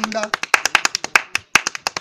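A man singing a rustic Hindi folk verse, keeping time with rapid hand claps. His voice stops a little past halfway while the claps carry on alone.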